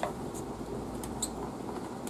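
A few faint, light clicks of plastic vent caps being popped off the cells of golf cart lead-acid batteries, over a low steady background hum.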